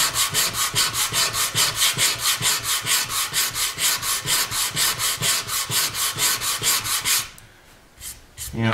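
A sanding block with sandpaper is rubbed quickly back and forth over a black-stained quilted maple guitar top, about five strokes a second. It is sanding the stain back so that the figure pops. The strokes stop about seven seconds in.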